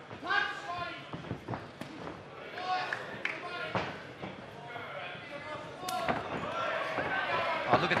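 Shouting voices from the crowd and corners around an MMA cage, broken by several sharp thuds from the fighters' strikes and footwork, the sharpest just before they go into a clinch near the end.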